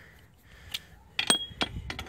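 Chrome socket and steel bolts clinking together as they are handled: a few sharp metallic clinks in the second second, one of them with a short ring.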